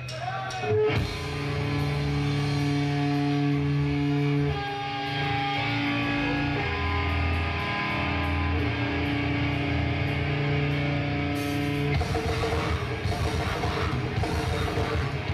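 Hardcore band playing live: electric guitar holding long ringing chords that change every few seconds, then drums and the full band come in about twelve seconds in.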